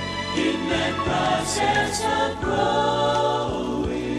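A gospel vocal group and orchestra performing, with held chords that change about once a second over a steady bass line.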